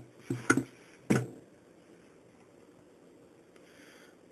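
Handling noise of an inspection mirror and flashlight being positioned at an acoustic guitar: a few short knocks and clicks in the first second or so, then quiet.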